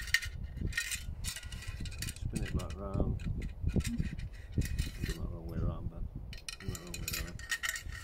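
Light metallic clicks and clinks from the aluminium frame and steel blade of a folding bow saw being folded and slotted together by hand, over dull handling bumps.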